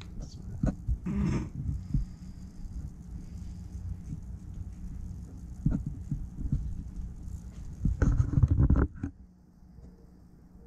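Handling noise as small blaster parts, a nylon spacer and a metal rod, are worked by hand: scattered light clicks and rustles over a low rumble, with a louder stretch of low thumps about eight seconds in.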